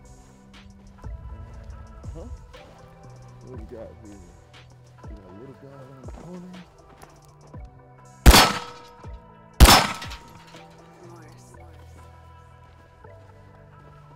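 Two shots from a CZ P-10 C striker-fired compact pistol, a little over a second apart, over steady background music.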